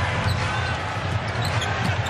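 Basketball being dribbled on a hardwood court under steady arena crowd noise, with a short sneaker squeak or two.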